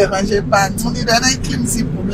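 Steady low rumble of a car's engine, heard from inside the cabin, under a woman's voice.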